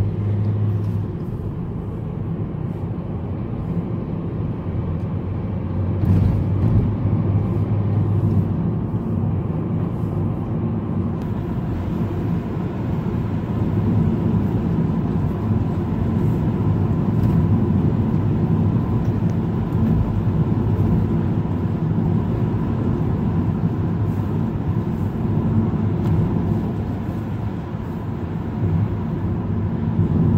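Car driving along a road, heard from inside the cabin: a steady low rumble of engine and road noise.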